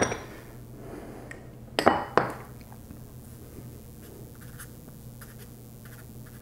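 Glass jars clinking as they are handled and set down on a table: one sharp ringing clink at the start and two more, close together, about two seconds in.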